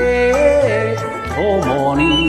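A singer holds one long note, then bends it down and back up in quick ornamented turns in Japanese folk-song style, over a karaoke backing track with a steady repeating bass line.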